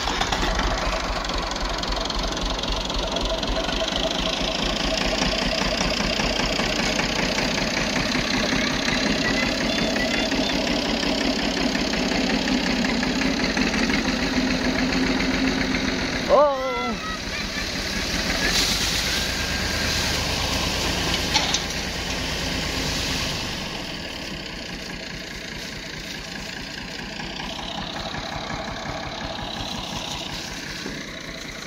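Farm tractor's diesel engine running with a steady, even beat as it hauls a heavily loaded trolley down a dirt mound. About halfway through there is a sudden break, and from about 23 seconds in the engine sounds quieter and farther off.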